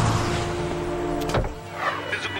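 Car sounds: a low, steady rumble, with one sharp knock about a second and a quarter in. After the knock the low rumble drops away.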